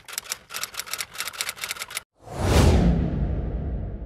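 Intro sound effects: a quick run of typewriter keystrokes, about seven a second, for roughly two seconds. Then a falling whoosh with a deep rumble that slowly fades.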